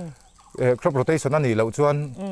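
Speech only: a man talking, after a brief pause near the start.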